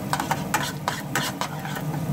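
Metal spoon scraping and clinking against a metal pan in quick, irregular strokes, stirring minced garlic as it fries in butter and oil, with the fat sizzling underneath.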